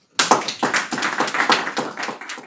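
Audience applause: many hands clapping, starting just after the start and dying down near the end.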